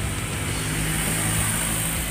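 An engine running steadily at idle, a low even hum with a faint high hiss over it.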